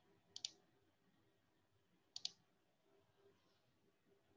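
Two computer mouse clicks, one about half a second in and one about two seconds later, each a quick pair of sharp snaps, over near silence.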